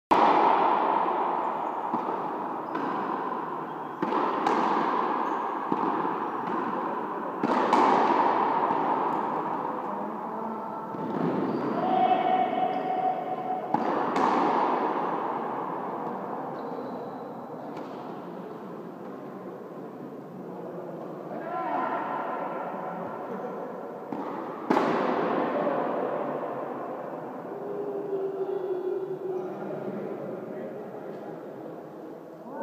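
Frontenis rubber ball struck by rackets and cracking off the frontón's front wall, about ten sharp hits at uneven intervals during a rally. Each hit rings on with a long echo in the hall. Players' voices call out twice.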